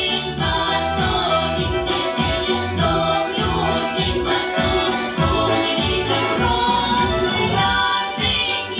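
A children's folk vocal ensemble of four girls singing a Russian folk-style song into microphones over an instrumental backing track with a steady, bouncy beat.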